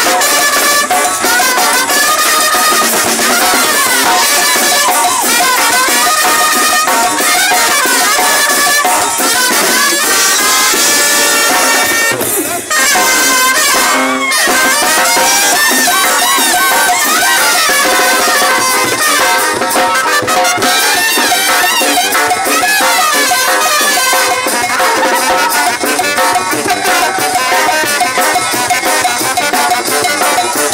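Live brass band of trumpets and other horns playing a lively tune, driven by snare drums, cymbal and bass drum.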